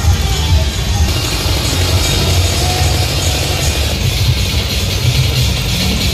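Loud dance music with heavy bass, played through a truck-mounted DJ sound system.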